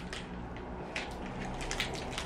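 A resealable Kit Kat wrapper crinkling and crackling in the hands as it is opened, in irregular small crackles.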